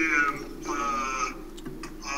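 A man's voice making drawn-out hesitation sounds, a short "uh" at the start and a longer held "uhh" just after, with a couple of faint clicks near the end.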